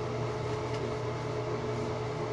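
Steady ventilation hum, a constant drone with a faint steady tone in it.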